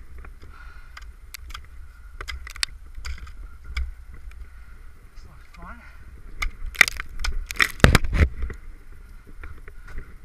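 Ice axes striking and scraping soft wet ice: scattered sharp hits, then a rapid cluster of louder strikes about seven to eight seconds in.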